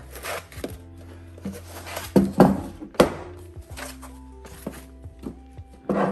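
A car amplifier being lifted out of its foam packing inserts: foam rubbing and a few sharp knocks, the loudest two to three seconds in, over steady background music.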